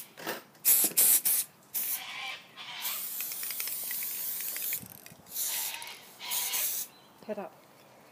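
Aerosol can of silver colour hairspray hissing as it is sprayed onto hair: several short bursts, then a longer steady spray of over a second, then a few more bursts.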